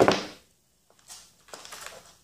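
Handling noise of hands plugging a battery lead into a foam RC plane: a short rustle at the start, then a few faint scuffs and clicks.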